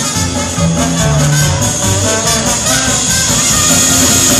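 Live swing-style jazz band playing an instrumental passage, led by a trumpet and a trombone playing together.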